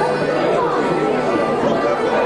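Crowd chatter: many people talking at once in a large, echoing hall.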